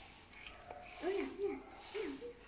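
A soft, wavering hum of a person's voice, three short rises and falls about a second in, over faint rubbing noises.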